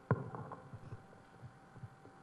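A sharp thump just after the start, then a few soft low knocks: handling noise from a handheld microphone as it is moved, over a faint steady hum.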